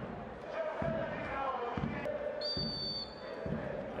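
Handball arena ambience with low thuds about once a second. A short, steady referee's whistle sounds about two and a half seconds in, calling the penalty throw.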